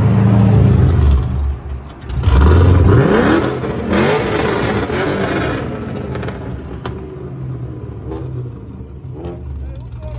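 Pontiac G8's engine rumbling, then revved hard about two and a half seconds in with a rising pitch, and easing back to a steady lower idle.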